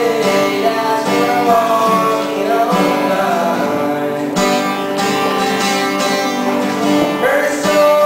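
A man singing while playing an acoustic guitar.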